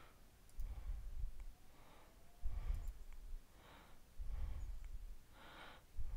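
A man breathing close to a computer microphone: several slow breaths in and out, each with a soft puff of air on the mic, and a few faint mouse clicks.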